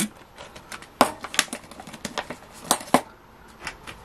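A coin and a small clear plastic pouch being handled: light plastic rustling with a handful of sharp clicks and taps, the loudest about a second in and twice just before the three-second mark.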